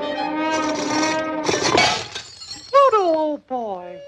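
Orchestral score holding a chord, cut by the crash of a block of ice shattering about one and a half seconds in, followed by two short cries that fall in pitch.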